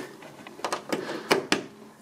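A few light plastic clicks and knocks as a right-angle DC barrel plug is pushed into the power socket on the back of a 3D printer.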